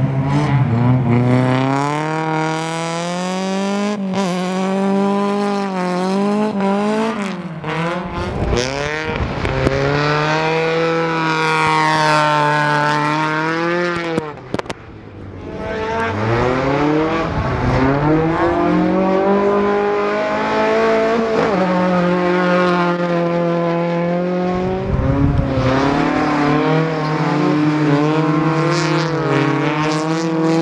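Ice-racing cars' engines revving hard as they slide around an ice circuit. The engine note climbs and falls back again and again through throttle changes and gear shifts, and dips briefly about halfway through.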